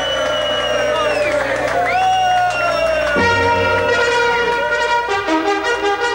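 Brass music, trumpet-led: long held notes that slide down and swoop back up, then a steady rhythmic passage of repeated notes from about three seconds in.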